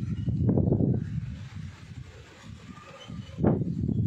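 Gusty wind buffeting a phone microphone in rumbling surges, dropping to a lull after about a second and surging back suddenly near the end.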